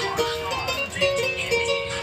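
Karaoke machine playing the instrumental intro of a song, a melody of held notes.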